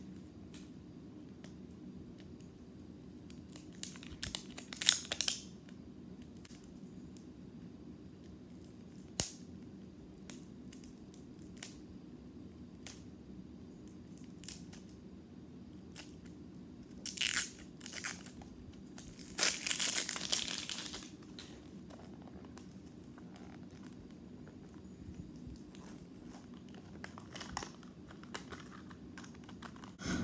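Plastic wrapping and seal of a Mini Brands capsule ball being torn and crinkled in short, scattered bursts with small handling clicks, the longest crinkle about two-thirds of the way through.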